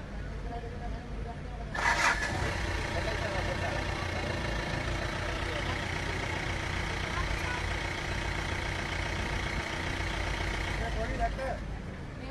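A vehicle engine starts with a sudden burst about two seconds in, then runs steadily with a low rumble and a faint whine, stopping about a second before the end.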